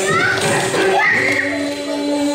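Young children's high voices calling out with short rising cries, over the Carnatic dance music, which carries on softer beneath them.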